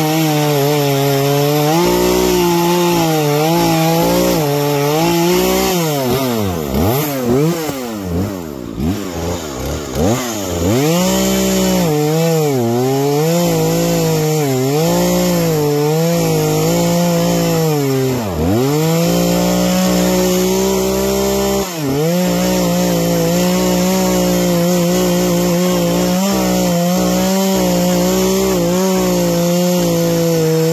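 Two-stroke gas chainsaw running at high revs while cutting through a tree trunk, its engine pitch wavering as the chain loads up in the wood. About a fifth of the way through, the revs drop and swoop up and down several times for a few seconds; later the engine dips sharply twice, briefly, before running steady again.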